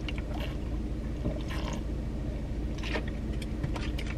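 Car engine idling, heard inside the cabin as a steady low hum, with a few faint swallowing sounds as water is drunk from a bottle.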